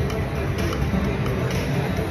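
Steady casino-floor din while a video slot machine's bonus reels spin.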